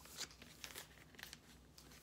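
Faint, irregular crinkling of a vinyl LP's clear plastic outer sleeve as the record is handled and turned over.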